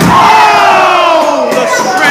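Wrestling spectators yelling together in a long, falling "ooh" as a wrestler is slammed to the ring mat, with a thud right at the start.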